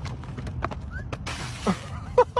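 A rider thrown off a sport motorcycle onto the pavement during a stunt: a steady low rumble with a run of sharp knocks and clatter from the fall, and a short falling cry near the end.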